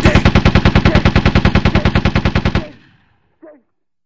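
Machine-gun sound effect: rapid automatic fire at about a dozen rounds a second, which stops a little under three seconds in and trails off in an echo.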